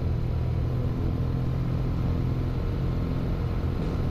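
Motorcycle engine running at a steady cruise, heard from on board as an even low drone with wind and road noise over it.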